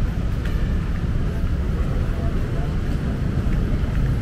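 Steady rumble of city street traffic mixed with wind buffeting the camera microphone, heaviest in the low end.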